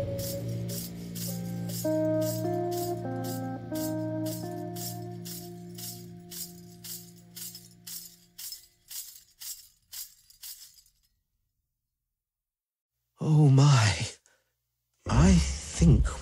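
The fading close of a doom-metal track: held, shifting notes over a steady low drone, with a jingling tambourine-like hit about two and a half times a second, dying away to silence about eleven seconds in. Near the end a spoken voice comes in twice, opening the next track.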